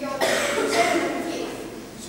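A person coughing, starting about a quarter of a second in.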